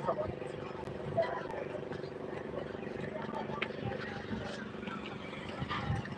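A steady machine hum made of several even tones, with faint voices in the background.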